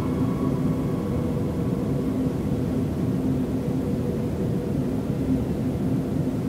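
Dark ambient noise drone: a dense, steady low rumbling wash with a faint held tone, the melody all but buried. This is a heavily degraded, distorted reworking of a piece of background music.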